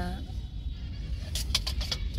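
A woman's voice trailing off, then a short pause over a steady low rumble, with a few brief clicks in the second half.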